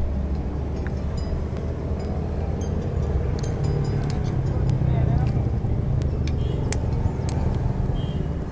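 Steady low rumble of nearby road traffic, with a few sharp clicks of a spoon against a plate.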